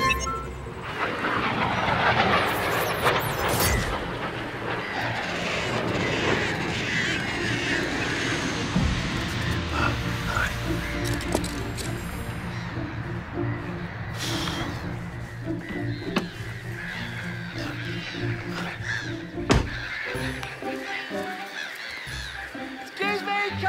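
Background music for a children's TV adventure, with cartoon sound effects and honking bird calls in the mix, and a short laugh near the end.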